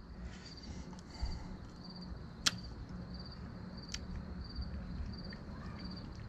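Crickets chirping, a short high chirp repeating about every half second to second, over a low steady hum. About two and a half seconds in, a sharp click from spring-loaded dog nail clippers working a nail, and a fainter click near four seconds.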